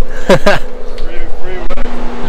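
Men's voices and laughter over a steady low hum.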